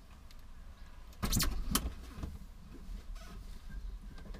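Clunks and rattles from a small old motorcycle being wheeled and handled at the van's open rear, with a cluster of sharp knocks a little over a second in, heard from inside the van.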